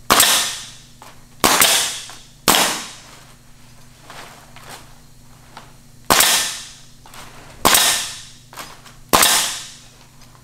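Pneumatic nailer firing six times, driving nails through synthetic thatch shingles into a wood frame. Each shot is a sharp crack that tapers off over about half a second, in irregular spacing with a gap of several seconds in the middle.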